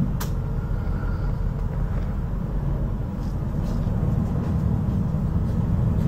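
Passenger ferry's engines running with a steady low rumble, heard from inside the cabin as the boat comes in to the wharf. A single sharp click sounds just after the start.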